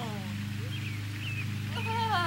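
A dog barking in long, falling, yelp-like calls, one trailing off at the start and another starting near the end, over a steady low hum. The barking is the mother dog's protest at not getting any treats.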